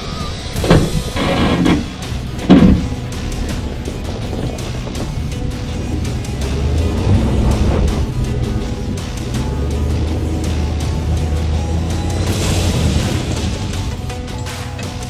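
Background music over a pickup truck: a few loud knocks in the first three seconds, the loudest of them the truck door shutting, then the truck's engine rumbling low as it pulls away.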